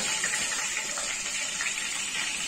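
Green chillies frying in hot oil in a pan, a steady sizzling hiss.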